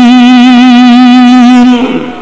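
A man's voice holding one long sung note with a slight vibrato, as in a chanted line of a sermon, breaking off near the end.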